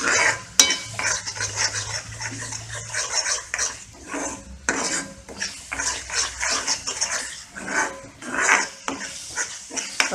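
A steel ladle repeatedly scraping and stirring a thick onion-tomato masala in a nonstick kadai, with light sizzling as the paste fries near the point where the oil separates.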